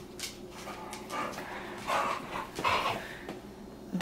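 Pet dog making three short breathy sounds, about a second apart, through the middle.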